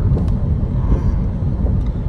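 Steady low rumble of road and engine noise heard inside a car cabin while driving.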